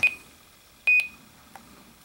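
Icom IC-R20 receiver's key beeps as its keypad is pressed to set the tuning step: two short high beeps, one right at the start and one about a second in with a key click.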